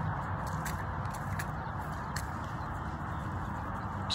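Footsteps on a concrete sidewalk, a few soft irregular steps, over a steady background noise.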